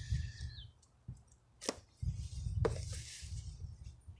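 A folding knife blade slicing through the tape and cardboard of a small box, a short scraping cut, then two sharp clicks as the box and knife are handled, over a low rumble.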